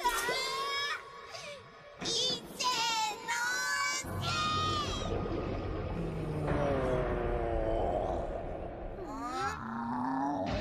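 Two cartoon voices screaming in two bursts, as if falling. After about four seconds a deep rumbling roar sets in under music, with wavering, falling tones.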